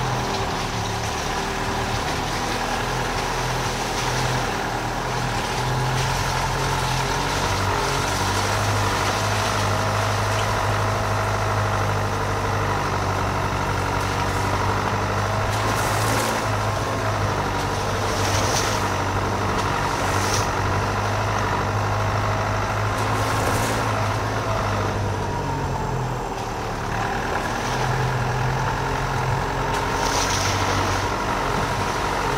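Dacia Duster's engine running at low speed as the car drives along a muddy, puddled track, with tyre noise. The engine note drops about eight seconds in and rises again near the end. Several short splashes or knocks come in the second half.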